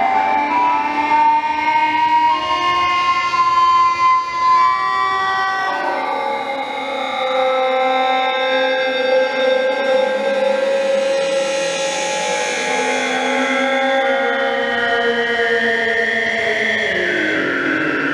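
Electronic drone music from loudspeakers: several sustained, horn-like synthesized tones layered into a chord. The tones glide slowly, rising early on, shifting to a new chord about a third of the way through and sliding down near the end.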